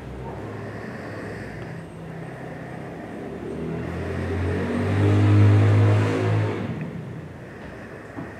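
A motor vehicle's engine passing by, growing louder to a peak about five to six seconds in, then fading away.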